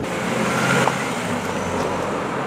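A mild-hybrid Renault Arkana driving past on the road: steady tyre and engine noise, swelling a little to its loudest just before a second in.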